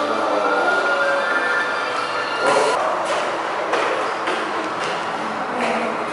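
Steady indoor ambience with background music holding a few long tones, and several short knocks about halfway through and near the end.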